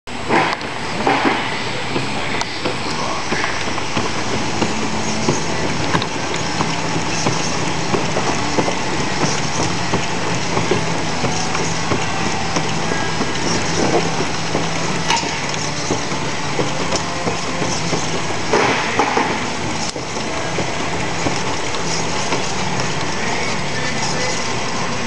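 A Chameleon folding and gluing machine runs steadily, its belts and rollers carrying card stock through, with a continuous mechanical noise and a low hum. Frequent small clicks sit on top, with louder swells about a second in and again near the end.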